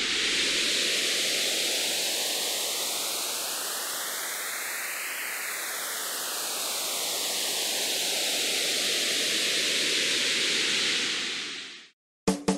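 Whooshing white-noise sound effect with a phaser-style filter sweep: the hollow in the hiss rises steadily for about five seconds, then falls back over about six seconds, and the sound fades out at the end.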